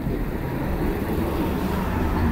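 Low, steady rumble of passing street traffic.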